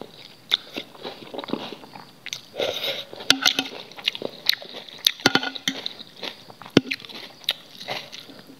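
Close-miked chewing of a mouthful of instant noodles, with scattered sharp wet mouth clicks and the fork stirring and tapping in the bowl.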